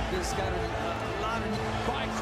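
Boxing fight broadcast audio: voices and crowd noise with a few thumps, over steady background music.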